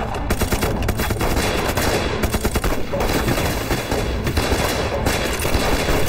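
Gunfire in a film battle scene: a dense, rapid fusillade of rifle shots fired in quick succession, with no let-up.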